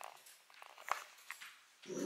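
A small dog making a few faint, short sounds in an otherwise quiet room.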